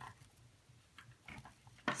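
Faint handling sounds of leather cord being pulled through small metal jump rings on a rubber-band loom bracelet: a few soft clicks and rustles, with a sharper click near the end.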